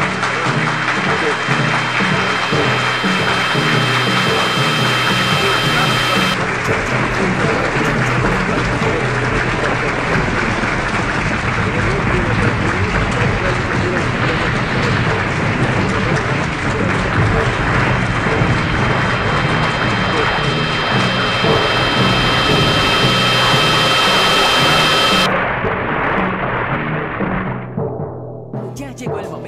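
Industrial noise music: a dense, loud wall of distorted noise with a few steady high tones over a repeating low pattern. The brightest top layer opens up about six seconds in, cuts back near the end, and the whole texture fades out at the very end.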